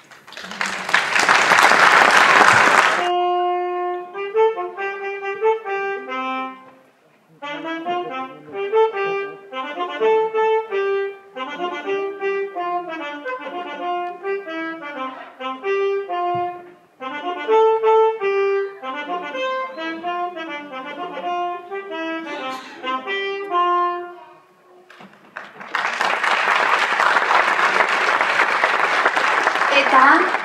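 Applause for about three seconds. Then a concert band's wind instruments play a short, lively melody of separate, clearly pitched notes with two brief pauses. Applause breaks out again about five seconds before the end.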